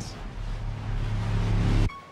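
Cinematic riser sound effect: a rushing noise over a low rumble that grows steadily louder and cuts off abruptly near the end, on a scene cut.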